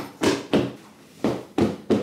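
Large couch pillows being fluffed by hand: a quick series of soft thumps as they are patted and plumped, with a short pause in the middle.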